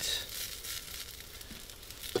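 Hot sautéed vegetables sizzling faintly with small crackles as they are scraped out of a steel pot into a stainless steel bowl.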